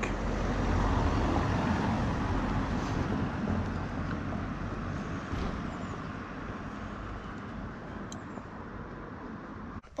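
Road noise of a passing motor vehicle, loudest in the first couple of seconds and fading slowly away.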